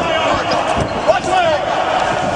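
Scuffle on a hard floor as a police officer pins a man down to handcuff him: thuds of bodies and shoes, with a sharper knock about a second in. People's voices call out over it, high and without clear words.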